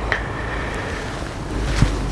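Wind rumbling on the microphone outdoors: a steady noisy rush, heaviest in the low end. A faint thin steady tone sits above it through the first part.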